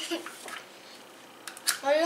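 Plastic toy bow being handled, with two light clicks about a second and a half in. Brief voice sounds come at the start, and a voice begins near the end.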